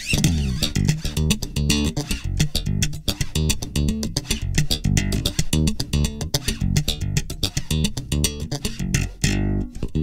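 Warrior electric bass with a swamp ash body and maple neck, heard through a Bartolini MV52CBJD3 2J Series dual jazz pickup, played as a quick run of notes with sharp plucked attacks and a snappy, twangy tone.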